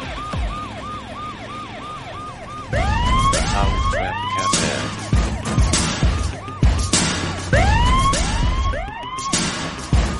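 Siren-like sound effect over intro music: a fast yelping wail repeating about three to four times a second, then slower rising whoops. From about three seconds in, heavy drum hits come in under it.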